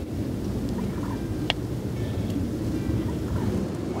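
Steady low rumble of wind buffeting the microphone, with a single sharp click about a second and a half in.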